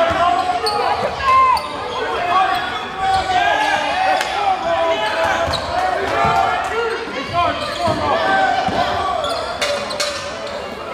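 A basketball being dribbled on a hardwood gym floor during live play, with players' and spectators' voices carrying through the gym.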